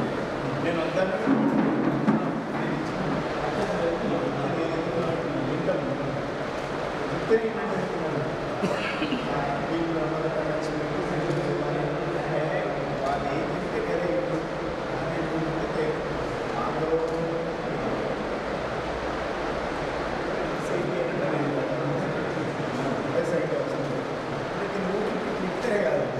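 Several men talking at once, an indistinct, overlapping conversation.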